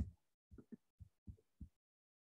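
Near silence broken by about five faint, short, soft low thumps in the first second and a half.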